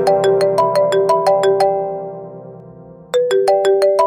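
Mobile phone ringtone for an incoming call: a short tune of quick notes, played, fading, then starting again about three seconds in and stopping abruptly as it is answered.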